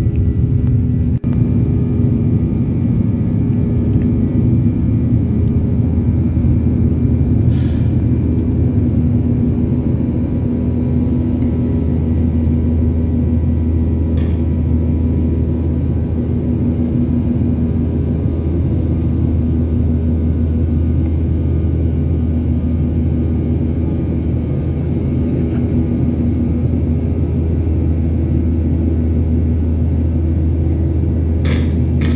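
Cabin noise of a Boeing 737 airliner climbing after takeoff, heard inside the cabin: a steady low drone from its twin jet engines, with a few constant hum tones above it.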